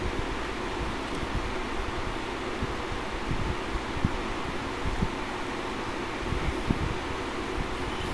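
Steady whir of an electric room fan, with a few soft knocks.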